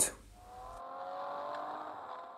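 A car driving by on a road, its engine note swelling up and then fading away.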